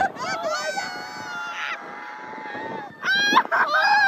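High-pitched screaming voices: one long held cry, then loud short shrieks that bend up and down near the end.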